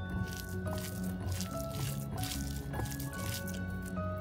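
Wet, irregular squishing of fried onions and fresh coriander leaves being squeezed and mixed by hand in a glass bowl, over background music of short held notes.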